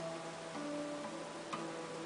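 Quiet live saxophone and acoustic guitar music: a few soft held notes, with a single plucked note about one and a half seconds in.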